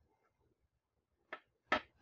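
Two short sharp clicks near the end, the second louder: the plastic snap-fit locks of an HP LaserJet P1102's front cover springing free as the cover is unclipped.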